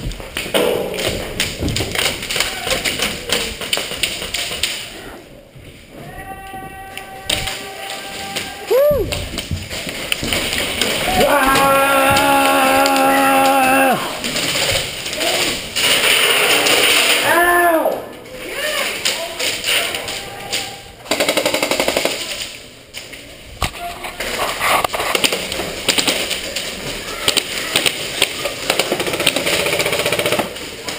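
Airsoft guns firing in an indoor arena, a run of sharp pops and clicks with BBs knocking against plywood barriers, mixed with players yelling, including long drawn-out shouts.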